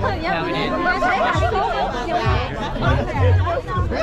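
Several people chatting at once, overlapping conversation with no single clear voice, over background music with a low bass line.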